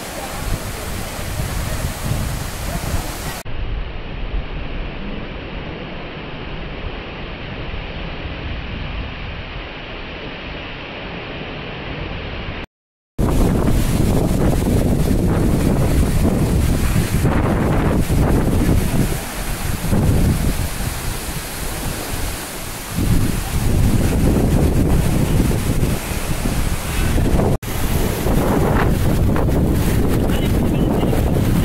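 Steady rushing roar of a tall waterfall pounding into a pool. In the second half it is louder, with wind buffeting the microphone in gusts. The sound cuts out for a moment about halfway through.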